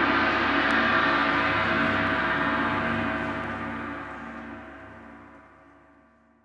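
Concert band's loud sustained chord with a gong or tam-tam ringing under it. It swells at the start, then slowly dies away over several seconds to almost nothing.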